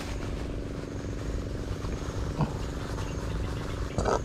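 A steady motor hum holding one pitch, with one brief short sound about two and a half seconds in.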